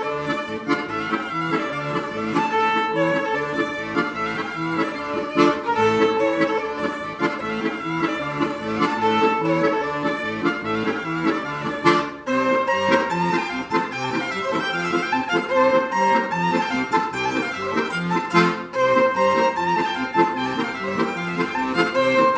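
Violin and accordion playing a piece together as a live duo, the violin carrying the melody over the accordion. The music breaks off briefly about twelve seconds in and then carries on.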